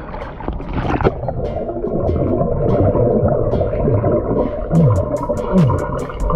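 A gasp of breath and a splash as a swimmer goes under, then the muffled underwater sound of water and exhaled air bubbles, with repeated low falling glides. A regular ticking starts about five seconds in.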